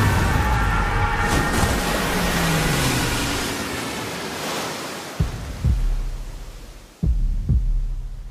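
Dense film-trailer sound mix: a loud rushing roar with held high tones that fades out over about four seconds. Then a deep heartbeat-like pulse of paired thumps, one pair about every two seconds.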